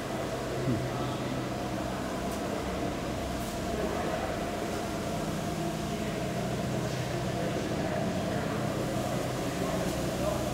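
A steady low mechanical hum with several constant low tones in it, with no clear beginning or end.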